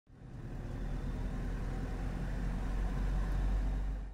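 A car driving, heard from inside the cabin: a steady low engine and road rumble that fades in at the start and grows slightly louder.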